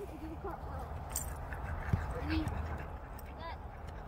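Faint voices of people talking at a distance over a steady low rumble, with a few brief clicks.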